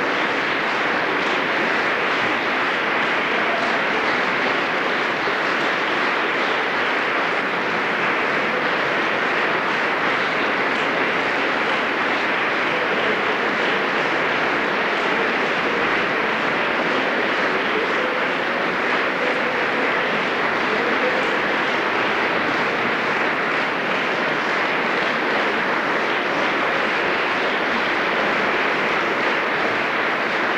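Concert audience applauding, a steady dense clapping that holds at one level throughout.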